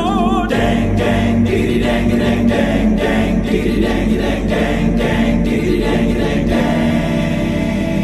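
Music: choral singing over a steady beat of about two pulses a second, with a short wavering voice in the first half second.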